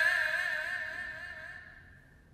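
Haegeum, the two-string Korean bowed fiddle, holding one long note with a wide, slow vibrato that fades away over about two seconds.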